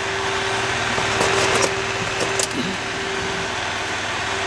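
Small clip-on circulation fan in a grow tent running, a steady whirring hum. A few light clicks between one and two and a half seconds in as a plastic hydroponic net pot of clay pebbles is handled.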